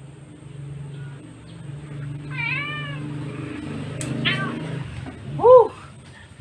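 Siamese cat meowing in protest while her claws are being clipped: three drawn-out meows that rise and fall in pitch, the last one near the end the loudest. Two sharp clicks come about four seconds in.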